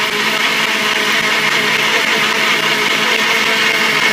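Kenwood countertop blender running at a steady speed, mixing cinnamon into a smooth liquid smoothie of milk, yogurt and berries.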